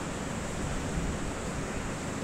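Steady, even hiss of background noise with no other event: the recording's own noise floor in a pause between words.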